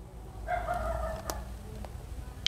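A faint call from a domestic chicken, one held pitched note about a second long, with a sharp click during it and a smaller click just after.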